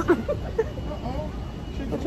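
People's voices: laughter trailing off at the very start, then faint talk, over a steady low background rumble.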